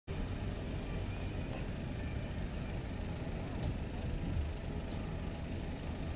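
Steady low rumble of a passenger ferry's engines as it manoeuvres to berth.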